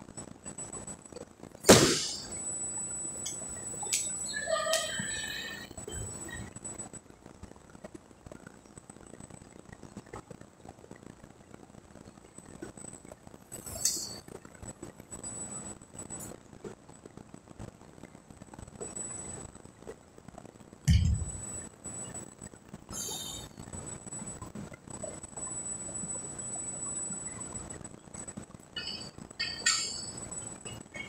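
Bumper plates being loaded onto a steel barbell: a sharp metal clank with a short ring about two seconds in, a dull low thud later on, and a run of light metallic clinks near the end as plates go onto the sleeve.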